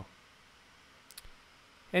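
Near silence, broken by a brief faint double click about a second in.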